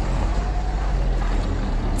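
Car engines idling, a steady low rumble.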